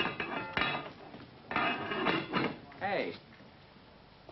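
A man coughs, with a sharp click about half a second in, followed by more throat noises and a short voiced grunt near the end.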